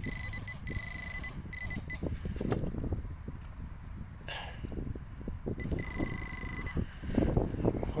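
A handheld metal-detecting pinpointer sounds a steady high alert tone for about two seconds as its probe is pushed into the soil over the buried target, and again for about a second a few seconds later. Between the tones, hands scrape and crumble clods of soil.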